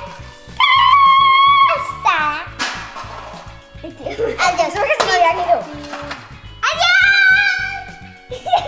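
Young girls' high-pitched squeals and laughter over background music with a steady beat.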